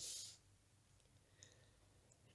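Near silence: room tone, with one faint, brief click about one and a half seconds in.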